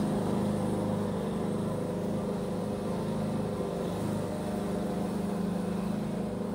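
Petrol lawn mower engine running steadily outside, a continuous even drone.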